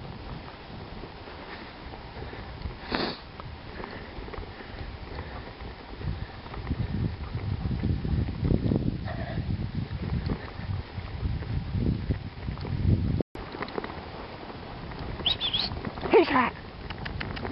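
Team of four Alaskan Malamutes running in harness on a snowy trail: paws on the snow and the dogs' breathing, over the rumble of the rig and gangline moving along. The rumble grows louder and more uneven from about six seconds in.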